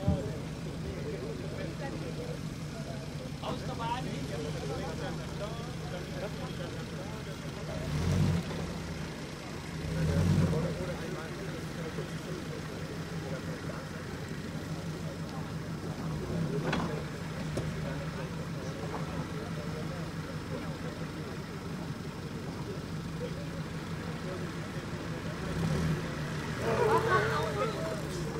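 Soft-top G-Class off-roader's engine running at low revs as it crawls over steep, uneven ground, with two brief rises in revs about eight and ten seconds in.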